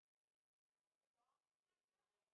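Near silence: no audible sound.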